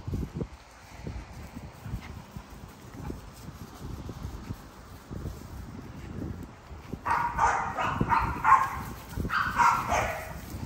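XL bully puppies barking and yipping in rough play, in two short bursts about seven seconds in and near the end. Before that there are only low rustling and bumping sounds.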